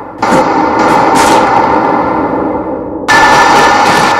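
Two loud sudden bangs, about three seconds apart, each ringing on and slowly dying away.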